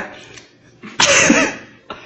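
A woman coughing once, about a second in, after biting into a hot chile pepper: the chile's heat catching her throat.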